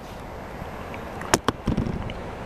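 Steady low background noise with two sharp clicks close together about a second and a half in, followed by a short low knock.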